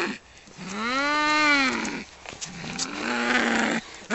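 Cats yowling while they fight: one long drawn-out yowl that rises and then falls in pitch, followed by a second, lower yowl.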